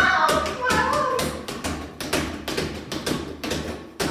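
Two rubber balls repeatedly thrown against a wall and caught, making a quick, irregular run of thuds and slaps, about three a second.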